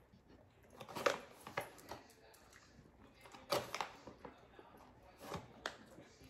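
Dogs chewing cheese-and-bacon flavoured chew treats: a handful of short, irregular clicks and cracks at uneven intervals.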